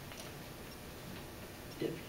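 Quiet room tone with a few faint, scattered ticks and clicks, and a short voice sound near the end.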